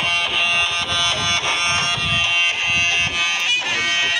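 Loud, reedy, nasal shawm (sorna) melody over drum beats, the folk music that accompanies a stick-fighting dance. The melody shifts near the end.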